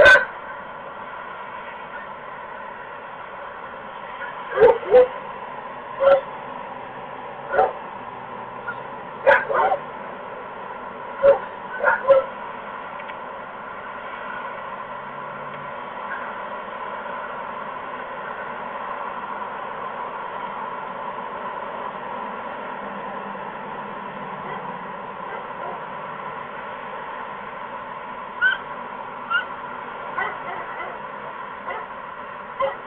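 Barn owl giving short, sharp calls, some in pairs, about eight in the first half and two more near the end, over a steady background hum.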